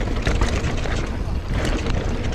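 Mountain bike rolling fast over a gravel path: tyres crunching and clicking on loose stones, with wind rumbling on the camera's microphone.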